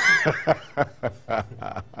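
A man laughing in a string of short chuckles, about three or four a second.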